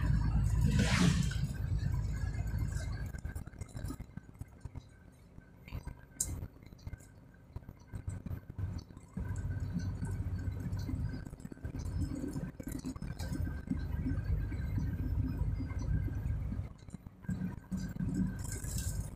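Vehicle engine running with a low rumble heard from inside the cab at low road speed, swelling and easing off, quieter for a few seconds in the middle, with small rattles and clinks from the cab.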